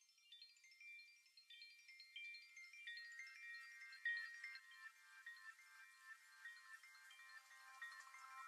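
Faint, tinkling chimes: many quick, overlapping high notes like a wind chime, with no beat or bass under them. About three seconds in the notes settle lower in pitch and grow a little louder.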